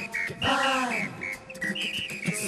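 A cappella choir's vocal samba groove, with short high whistle-like toots over the rhythm. About half a second in, a voice slides down in pitch for about half a second.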